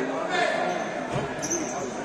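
Futsal ball thudding on a hard sports-hall floor among players' shouts, with a short high squeak of a shoe about one and a half seconds in; everything rings in the big hall.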